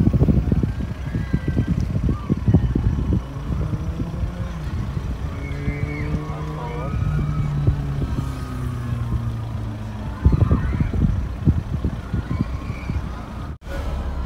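A car driving, with wind rumbling and buffeting on the microphone; in the middle a steady low droning tone with a brief rising glide takes over from the buffeting. The sound cuts off abruptly near the end.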